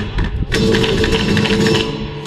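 A fast run of flamenco zapateado taps starting about half a second in, over flamenco music with a held note underneath.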